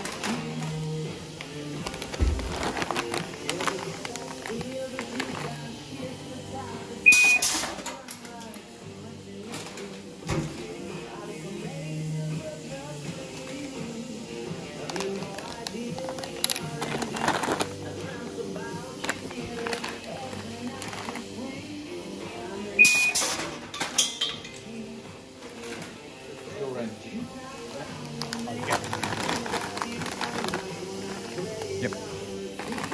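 Food-line metal detector going off twice, about sixteen seconds apart: each time a short beep followed by a burst of noise, as a metal test piece passes through the aperture and is detected. A steady low conveyor hum runs underneath.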